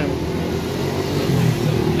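Steady low rumble of vehicle engines from road traffic.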